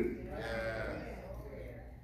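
A loud spoken word breaks off at the start, then a faint, wavering drawn-out voice fades away over about a second over a low steady hum.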